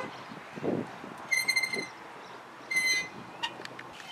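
Playground swing squeaking as it swings back and forth: a short, high, even-pitched squeak about every second and a half.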